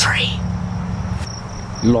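Insects giving a steady high-pitched drone in the background, over a low rumble on the microphone that cuts off abruptly a little over a second in.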